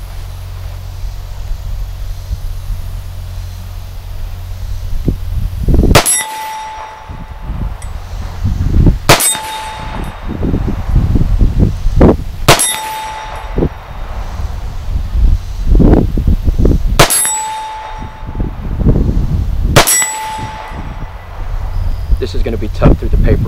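Five .223 Wylde rifle shots, a few seconds apart, each followed at once by the steel plate target ringing with a short, steady tone as the bullet strikes it.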